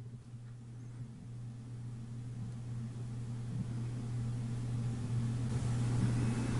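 A steady low mechanical hum that grows gradually louder.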